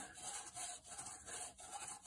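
Faint soft rubbing of hands working soap into a Stihl MS 271 chainsaw air filter, with small irregular handling scratches.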